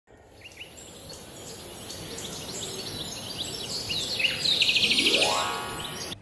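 Birds chirping in a garden, a quick run of short falling chirps over a steady high hiss, fading in at the start. Near the end a fast, loud trill and a rising tone come in.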